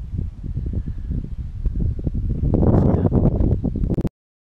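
Wind buffeting the camera microphone in an open field: a loud, gusty rumble that swells about two-thirds of the way through and then cuts off suddenly.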